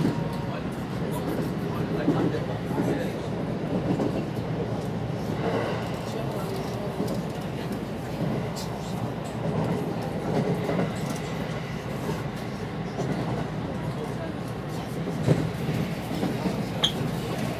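Electric subway train running along the track, heard inside the driver's cab: a steady rumble of wheels and motors with scattered short clicks, and a sharper knock about a second before the end.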